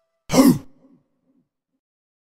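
A single short, rough vocal sample, like a gruff shout or grunt, about half a second in, closing a trap beat; the last held note of the melody fades just before it.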